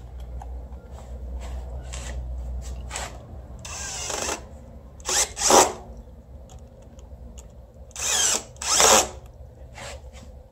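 Cordless drill-driver with a nut-driver bit tightening a hose clamp screw on a coolant hose, run in short bursts: a few about four to five and a half seconds in, and two more near the end.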